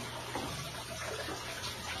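Steady running water, an even wash of noise with a faint low hum beneath it.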